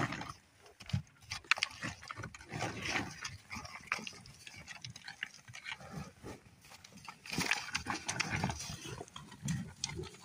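Bison feeding at close range: low grunts and irregular crunching as they eat off the snowy ground, busiest near the end.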